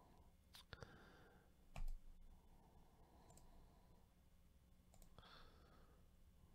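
Near silence with a few faint computer mouse clicks, and one dull knock about two seconds in.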